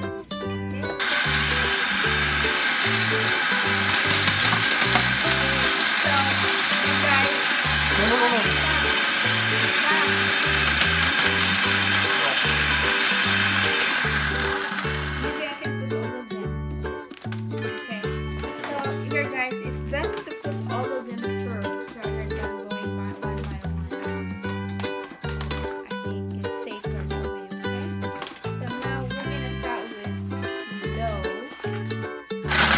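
Food processor running loud and steady for about fourteen seconds, grinding Oreo-type chocolate cookies into crumbs, then stopping. Background music with a steady beat plays throughout.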